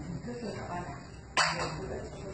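A dog barking once, a sudden loud bark about a second and a half in.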